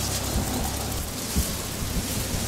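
Wind buffeting the microphone: a steady noisy hiss over a fluttering low rumble, with a couple of low thumps.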